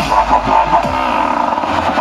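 Dubstep playing loud over a rave sound system, with a heavy sub-bass line that fades out near the end, mixed with the noise of a large crowd rushing together.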